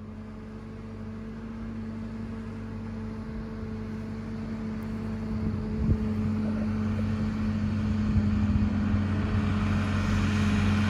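John Deere 4320 tractor's diesel engine running at a steady speed, growing steadily louder as the tractor drives toward the listener. There is a brief knock about midway.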